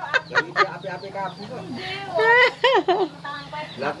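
Chickens clucking: a run of short clucks, then a few louder, drawn-out calls about two seconds in.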